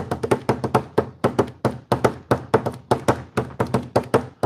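Fast hand drumming on a worktable, played like a Hawaiian drum: a quick, steady run of slaps and taps, about six or seven a second, that stops just after the end.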